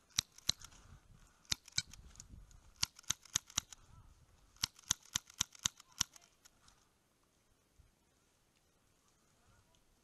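An airsoft pistol fires about fifteen sharp shots in quick groups of two to six, stopping about six seconds in.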